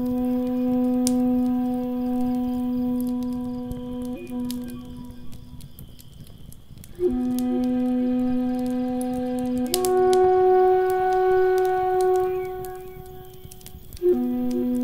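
Native American flute playing slow, long-held notes. It breaks off for a couple of seconds midway, then comes back and climbs to a higher note. Throughout, a wood fire crackles lightly.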